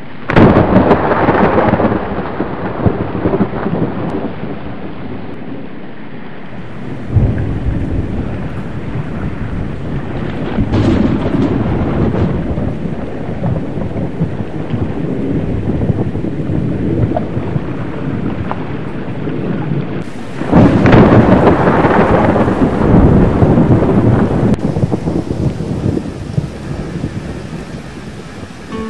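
Thunderstorm: rolling peals of thunder over a steady hiss of rain. There are loud swells at the start, at about seven and eleven seconds in, and a longer, heavier one from about twenty-one seconds in.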